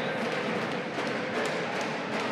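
Steady background noise of an indoor volleyball hall, with a few faint knocks.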